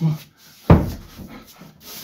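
A wooden interior door shut hard: one heavy thud about two-thirds of a second in that rings briefly, followed by faint scraping against the wood. A short grunt comes just before it.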